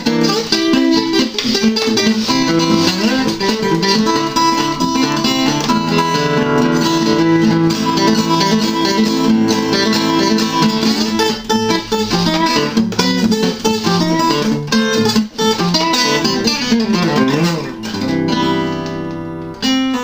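Early-1970s Harmony H-6362 acoustic guitar, cedar top with mahogany back and sides, played solo by hand: a continuous run of plucked melody notes and chords, with a few sliding notes and then a chord left ringing and fading for about two seconds near the end.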